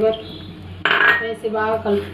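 A wooden spatula scraping against a metal pan while stirring sugar into damp semolina, with one short, loud scrape about a second in.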